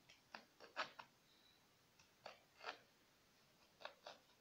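Small kitchen knife cutting into the skin of a whole cucumber on a wooden cutting board. Faint, short, crisp cuts: a quick cluster of four in the first second, then three more spread through the rest.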